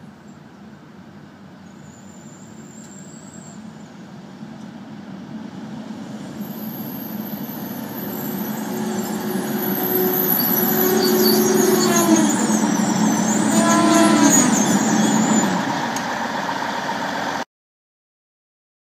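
Transwa diesel railcar approaching and pulling into the platform, growing steadily louder for about ten seconds, with a high thin squeal and engine and brake tones falling in pitch as it slows. The sound cuts off suddenly near the end.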